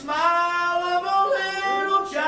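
Unaccompanied singing in a church service: a voice holding long drawn-out notes that step up and down in pitch.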